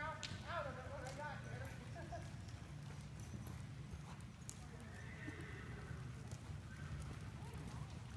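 A horse whinnying briefly near the start, over the faint hoofbeats of horses walking and trotting on soft arena footing.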